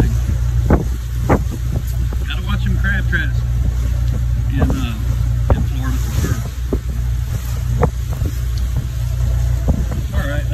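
Motor yacht's inboard engine running steadily at cruise, a continuous low drone, with wind on the microphone and scattered short knocks.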